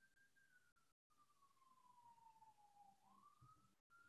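Near silence, with only a very faint wailing tone that glides slowly down in pitch and then rises again near the end.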